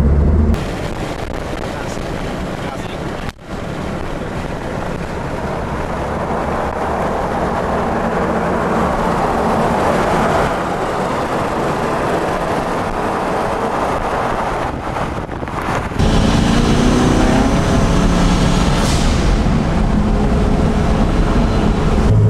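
A 1969 Camaro with a 572 cubic-inch twin-turbo big-block V8, cruising gently on the road. For most of the stretch it is heard from outside as a rushing of wind and road noise that grows louder toward the middle as the car goes by. Near the end it is heard from inside the cabin again, the engine running with a low, steady drone.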